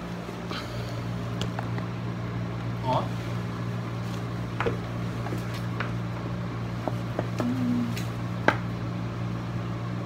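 Steady low hum in a small room, with scattered light clicks and taps; the sharpest tap comes about eight and a half seconds in.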